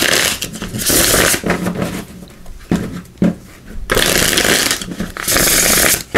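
A deck of Runic Tarot cards being riffle-shuffled: the two halves riffle together in a fluttering run lasting about a second, then are squared and riffled again about three seconds later. A couple of soft taps of the deck fall between the two riffles.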